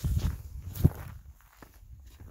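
Close handling noise of a handheld camera with a finger over the lens: low rubbing and scuffing, with a sharp knock just under a second in, growing quieter in the second half.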